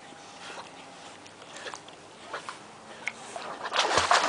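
A vizsla swimming close by in lake water: faint water sounds and the dog's breathing, getting louder near the end as it nears.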